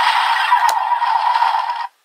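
A DX Perfect Wing Vistamp toy's electronic sound effect playing through its small built-in speaker: a loud, noisy burst lasting nearly two seconds that cuts off suddenly. A single sharp click comes about two-thirds of a second in.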